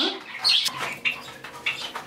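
Small pet birds chirping: a few short, high chirps, the clearest about half a second in.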